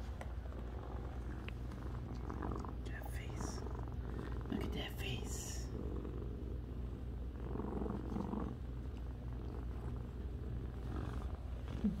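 Domestic cat purring steadily, with a few brief higher-pitched sounds partway through.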